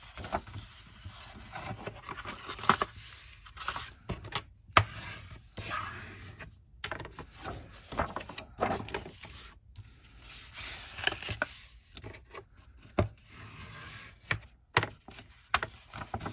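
A bone folder rubbing and scraping along the score lines of a sheet of patterned paper, burnishing the folds crisp, with paper rustling and sharp taps as the sheet is lifted, flipped and laid back down on the scoring board.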